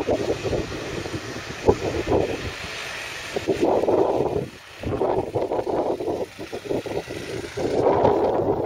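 A van driving slowly past on a town street, mixed with uneven gusts of wind buffeting the microphone.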